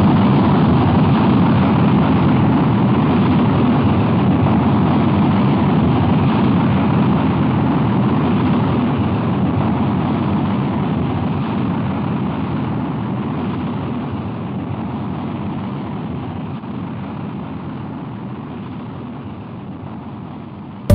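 Cartoon rocket-launch sound effect: a steady, deep engine rush with no distinct tones, slowly fading away.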